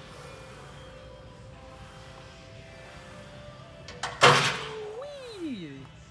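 Faint background music, then about four seconds in a sudden loud clatter, the loudest sound here, followed by a man's voice sliding down in pitch as a drawn-out groan.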